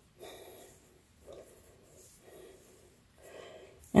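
Faint, soft breaths close to the microphone, about four short ones roughly a second apart, with quiet handling of loose thread scraps.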